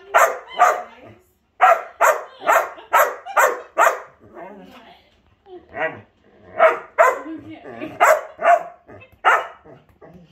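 Old English sheepdog barking repeatedly in quick runs of short, loud barks, with a brief lull about halfway through.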